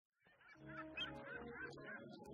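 Faint gull calls, a run of short squawks, over a low steady drone, starting about half a second in.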